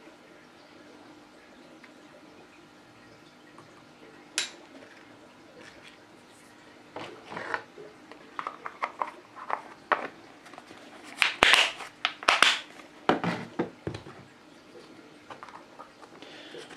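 A small plastic spoon scraping and tapping in a plastic tub of powdered shrimp food, with plastic containers and lids being handled. There is one sharp click early. Short clicks and scrapes come thick from about halfway and are loudest a few seconds later.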